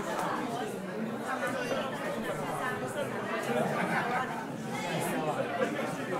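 Many people talking at once in a club room, an indistinct hubbub of voices with no music playing.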